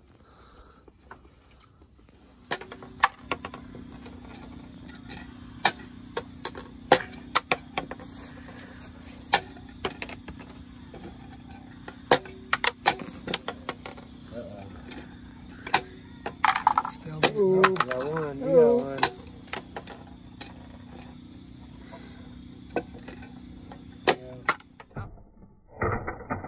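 Plastic game chips snapped from spring launchers and clattering onto a wooden table and into plastic cups: many irregular sharp clicks over a steady low hum.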